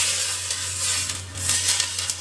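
Hot oil and sauce poured from a frying pan onto a pile of shredded scallions, sizzling steadily with a few small crackles. A steady low hum runs underneath.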